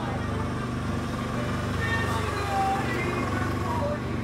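Street sound of motor traffic running, with people's voices.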